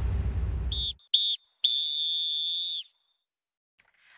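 A referee's whistle blown twice briefly and then once long, the football full-time signal. Music ends just before the first blast, about a second in.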